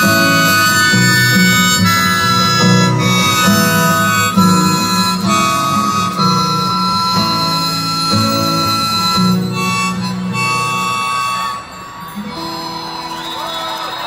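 Live harmonica, played from a neck rack, wailing over strummed acoustic guitar in a song's instrumental close. The playing drops away about twelve seconds in, leaving a last ringing note as the audience starts to cheer and whistle near the end.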